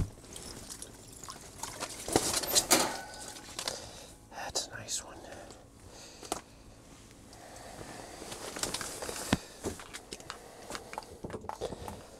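A freshly landed walleye being handled and unhooked on the wet floor of an ice shelter: scattered rustles, taps and wet sounds, busiest a couple of seconds in.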